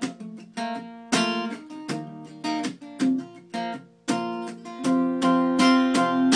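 Acoustic guitar strummed chords in a country rhythm, an instrumental stretch with no singing; the strumming grows fuller and steadier in the last couple of seconds.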